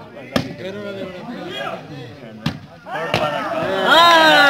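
Three sharp smacks of a volleyball being struck, about half a second in, then near the middle and again just after, over the voices of a crowd. The shouting swells into loud calls near the end.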